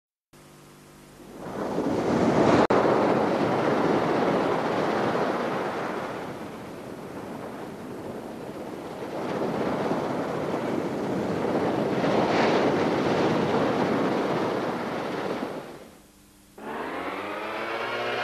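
A loud rushing noise, like surf or wind, that swells and fades twice, with a brief dropout about two and a half seconds in. Near the end it fades out and music with rising tones starts.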